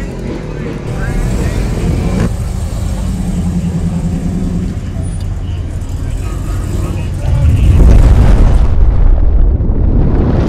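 A 1971 convertible's engine running low and rumbling, then getting much louder about seven and a half seconds in as the car pulls away.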